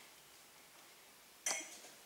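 Quiet room tone, broken about one and a half seconds in by one short, sharp click that dies away quickly.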